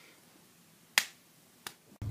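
Two sharp clicks over near silence, about two-thirds of a second apart, the first much louder than the second.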